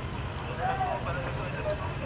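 Outdoor street ambience: a steady low rumble with faint voices in the background.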